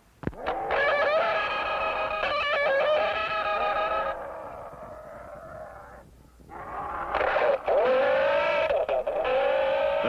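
Marx Sound of Power AstroGun toy space gun giving off its sci-fi sound effects: warbling, wavering tones with several pitches stacked together. A click opens it, the sound fades out around the middle, breaks off briefly, then returns at full strength.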